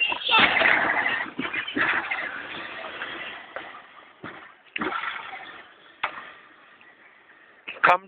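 Battery-powered ride-on toy Cadillac Escalade's hard plastic wheels and electric motor running on asphalt: a rough noise that fades away as the car drives off, with a few sharp knocks along the way.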